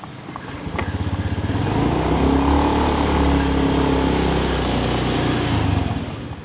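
A motorcycle engine running as the bike rides off. Its note builds about a second in, then holds steady and loud.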